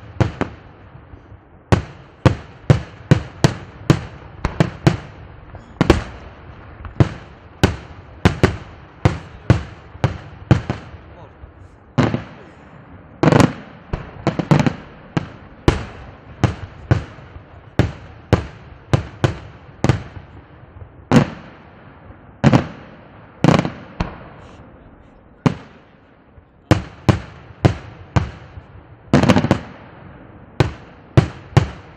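Daytime fireworks display: aerial shells bursting overhead in a rapid, irregular string of loud bangs, about one or two a second, each trailing off in a short echo. A few heavier, longer bursts stand out near the middle and near the end.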